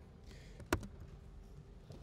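Quiet room tone with a single sharp click about three-quarters of a second in: a keystroke on a laptop keyboard.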